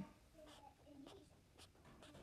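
Near silence with the faint scratching and tapping of a stylus writing on a tablet screen.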